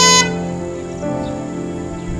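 A single short car-horn beep, about a quarter second long, at the very start. Soft background music of sustained chords plays under it.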